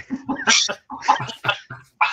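Men laughing in short, choppy bursts.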